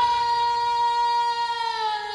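A female gospel soloist's voice holding one long high note, its pitch easing down slightly near the end.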